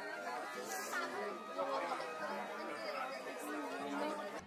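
Several people talking over one another at once: overlapping chatter with no single clear voice.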